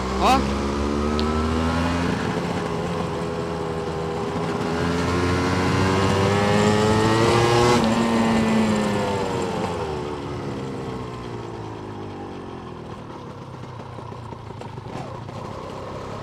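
Yamaha DT200R's two-stroke single-cylinder engine under way, heard from the rider's seat: the revs climb for about six seconds, then fall away and settle lower and quieter near the end. The engine still misfires a little at low revs, a running fault the owner is chasing.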